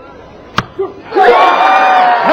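A single sharp knock about half a second in, as an arrow strikes the target, then a crowd bursting into loud shouting and cheering about a second in at an arrow landed in the centre of the gold.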